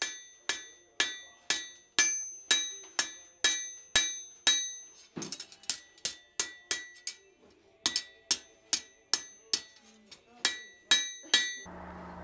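Hand hammer striking a hot steel blade on an anvil, about two blows a second, each with a bright metallic ring, in three runs broken by short pauses: forging work straightening the blade's spine and curving its tip.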